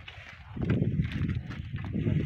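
Hoofbeats of a pair of draught bullocks pulling a loaded cart on a dirt track, over a low rumble; the sound picks up about half a second in.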